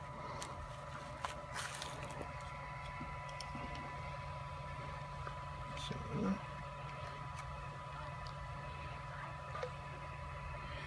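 Low, steady room hum with a thin steady whine, and a few faint clicks and a soft rustle of handling near bubble wrap and calipers, one small bump a little after six seconds in.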